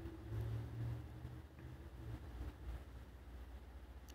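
Faint, steady low rumble of background noise with no clear events.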